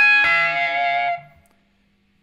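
Electric guitar lead note high on the neck: a bent note on the second string picked and held with a slight wobble, ringing for about a second before it dies away about halfway through, followed by silence.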